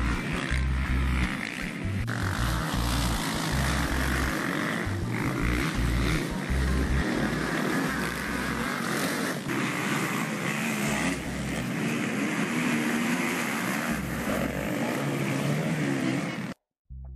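Motocross dirt bike engines running on the race track, a dense and steady engine noise, with patchy low rumble from wind on the microphone.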